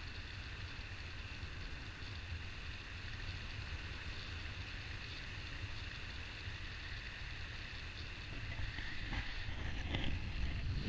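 Wind rushing over the camera microphone during paraglider flight, a steady rush with a low buffeting rumble. It grows louder near the end.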